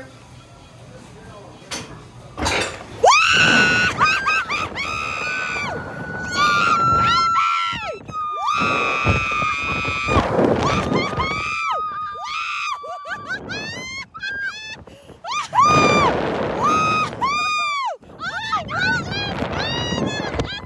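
Two riders on a slingshot thrill ride screaming and laughing as they are launched, long high held screams and shrieks starting a couple of seconds in, over a rush of wind noise.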